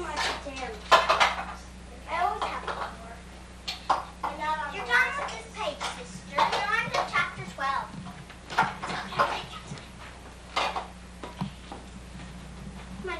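Several children's high-pitched voices chattering and calling out over one another, with a few sharp clinks or knocks, over a steady low electrical hum.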